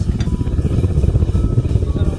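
Propane-fired melting furnace burner running with a steady low rumble.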